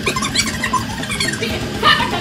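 High-pitched excited squeals and shrieks from young people's voices, in short bursts near the start and again near the end, amid noisy room chatter.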